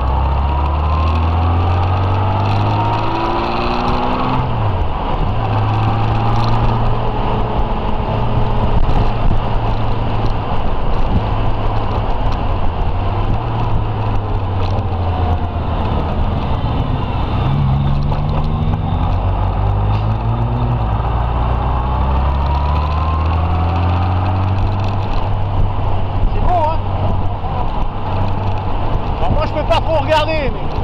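Touring motorcycle engine running while under way, its pitch shifting up and down as the rider speeds up and eases off through the bends, over a steady rush of wind and road noise.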